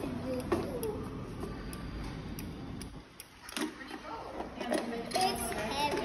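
Faint background voices with scattered clicks and knocks from laser tag vests and blasters being handled and put on; a sharp click stands out a little past halfway.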